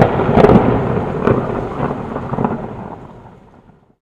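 Thunder-like crash sound effect: a loud rumble with a few sharp cracks in its first second and a half, then fading away over about three seconds.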